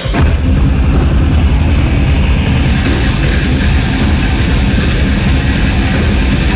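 Hardcore punk band playing live at full volume: heavily distorted electric guitar, bass and pounding drums kick in suddenly right at the start and drive on steadily.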